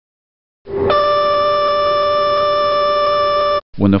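Boeing 737NG landing gear configuration warning horn sounding steadily for about three seconds and then cutting off suddenly. A lower tone starts first and a higher one joins it a moment later. It sounds because the flaps are at 15, a thrust lever is retarded and the landing gear are not down; in this configuration the horn cannot be silenced.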